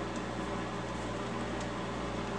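Microwave oven running: a steady low hum with fan noise.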